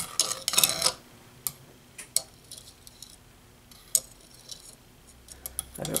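Metal tongs clinking against a freshly fired enamelled copper dish and shifting it on a stone surface, a quick cluster of clinks in the first second. Scattered small, sharp, high ticks follow.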